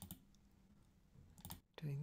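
A few faint computer mouse clicks: one at the start and a quick pair about a second and a half in, over quiet room tone.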